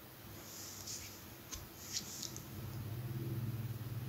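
Faint scraping and a few light clicks of a screwdriver and fingers working on a laptop's plastic bottom case, with a low steady hum coming in a little past halfway.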